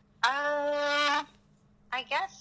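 A woman's voice holding one steady, drawn-out vowel for about a second. Speech starts again at the very end.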